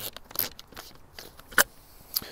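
Knight's Armament suppressor being twisted off the three-prong flash hider of an SR-15 rifle: a series of short metallic clicks and scrapes, with one sharper click about one and a half seconds in. The suppressor comes off freely rather than sticking.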